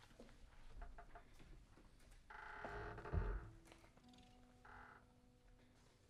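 Quiet stage sounds between pieces: scattered light clicks and handling noises, a brief pitched sound ending in a soft thump about three seconds in, then a soft held instrument note over the last two seconds as the band readies the next piece.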